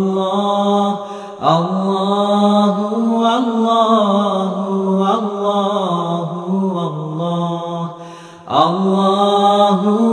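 Unaccompanied devotional vocal chant (nasheed) on the word "Allahu", sung in long held, gliding notes. It is broken by two short pauses for breath, about a second in and near the end.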